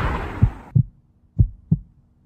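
Heartbeat sound effect: two pairs of low, dull thumps about a second apart, each pair a quick double beat. A faint steady hum sits under them. The fading tail of a loud noisy boom fills the first moment.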